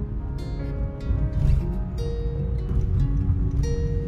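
Background music with plucked string notes over held tones.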